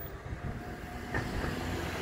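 A low, steady outdoor rumble, with a faint voice-like sound about a second in.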